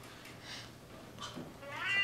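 Mostly quiet, with faint brief sounds; near the end a voice slides upward in pitch, leading into a held note.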